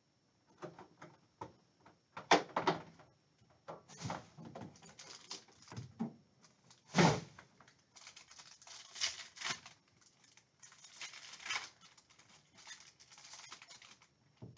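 Handling sounds at a table: several sharp knocks, the loudest about two and seven seconds in. Then, through the second half, the crinkling and tearing of a foil trading-card pack wrapper being ripped open.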